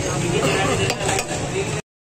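Metal spoon scraping and clinking against a stainless steel plate of biryani, with a couple of sharp clinks about a second in, over a steady low hum and background voices. The sound cuts off abruptly near the end.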